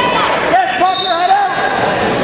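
Raised voices calling out in a large, echoing gym, loudest about halfway through, over a steady background of hall noise.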